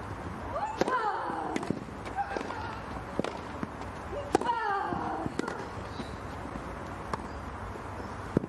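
Tennis rally on a grass court: sharp racket-on-ball hits about every second, starting with a serve just under a second in. The serve and a loud hit about four seconds in each come with a long, falling grunt from the hitting player.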